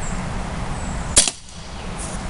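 A single sharp shot about a second in: a Remington Model 1875 CO2 BB revolver firing a steel BB, the sixth and last shot of the cylinder.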